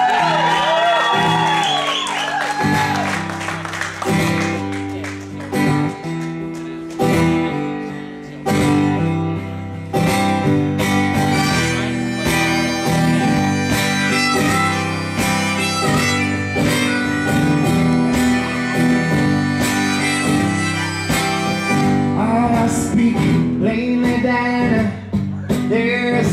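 Live solo acoustic guitar, strummed steadily through the instrumental introduction of a folk song.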